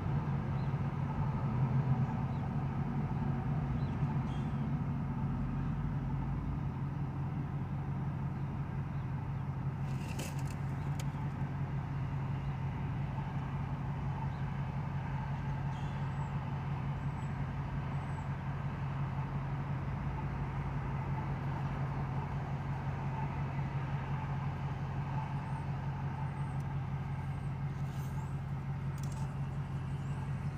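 A car idling at a stop, heard from inside the cabin: a steady low hum with faint traffic passing. A brief click about ten seconds in.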